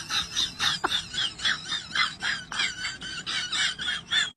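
High-pitched, squealing laughter: short giggles repeated about four times a second.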